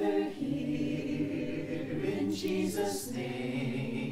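Choir singing a hymn a cappella, unaccompanied voices holding long notes and moving between them.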